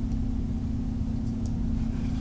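A steady low hum with one constant tone over a low rumble, broken by a couple of faint clicks.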